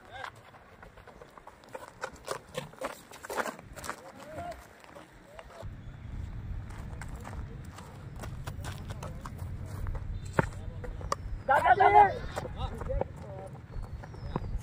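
A cricket bat striking the ball with one sharp crack about ten seconds in, followed a second later by a player's loud shout, a call as the batters set off for a run. Faint scattered clicks throughout and a low rumble from about halfway.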